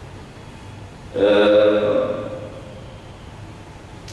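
A man's voice through a microphone: one held, steady-pitched phrase about a second in, lasting about a second, with quiet pauses on either side.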